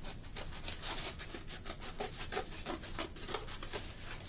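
Quick, repeated rasping strokes of a tool working across cardboard, several a second.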